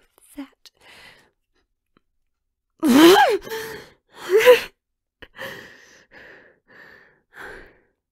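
A woman's voice making wordless, distressed sighs. Two loud sighs rise in pitch, about three seconds in and again about a second later, and fainter breathy sighs follow.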